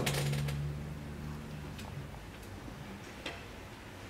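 Tongue clicks from a performer's mouth: a quick flurry of sharp clicks at the start, then a few single clicks spaced out over the next seconds. A low steady hum lies under the first second and a half.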